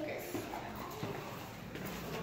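Faint, indistinct voices in a small room, with a few light scuffs.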